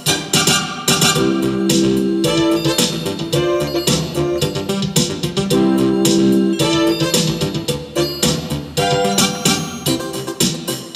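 Roland RA-50 arranger playing an automatic accompaniment with a steady drum beat, bass and held chords, under a melody played live from a MIDI keyboard controller.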